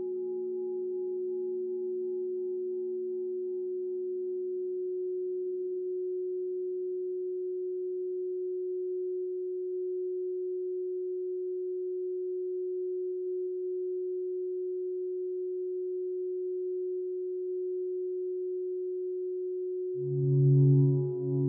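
A steady, pure electronic sine tone held at one pitch, the 'gold frequency' of a sound-healing track. A lower tone beneath it and a faint higher one fade away over the first half, leaving the single tone alone.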